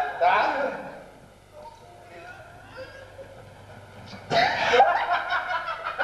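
Stage actors' voices: a man's loud speech in the first second, a quieter stretch, then a sudden loud cry about four seconds in that breaks into rapid laughter.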